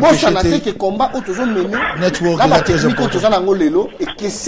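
Speech only: a man talking continuously, his voice rising and falling widely in pitch.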